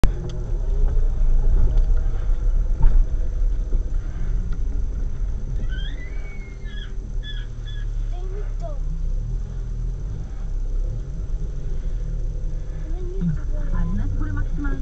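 A car engine running, a steady low hum throughout, with a few short high sliding sounds about six to seven seconds in.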